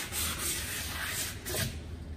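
A hand rubbing and sliding over a carbon adapter plate laid on a paddleboard's deck, a soft hiss in a few swells, as the plate is dry-fitted into its taped-off position.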